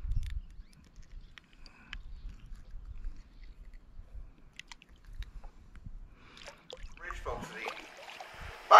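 Faint handling sounds of unhooking a crappie in a plastic kayak: scattered light clicks and taps over a low rumble.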